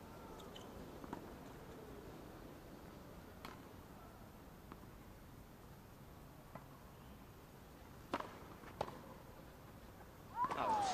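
Hushed quiet with a few sharp tennis-ball knocks: one about three and a half seconds in, one past six seconds, and two close together near the end.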